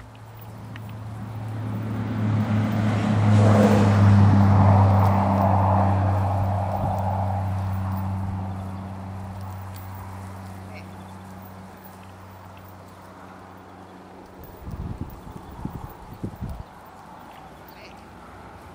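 A low, steady engine drone passes by, swelling to its loudest about four seconds in and fading away by around twelve seconds. A few dull low bumps follow near the end.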